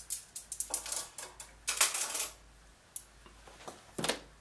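Metal armature wire and a pair of pliers being handled on a sketch pad and wooden workbench: a run of quick clicks and rattles, a louder clatter about two seconds in, and a single knock near the end.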